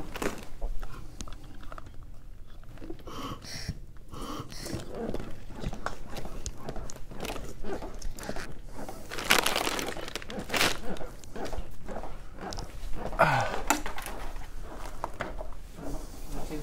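Plastic wrappers of IV supplies crinkling as they are unpacked, with short rustles throughout and a few louder bursts of crinkling in the second half.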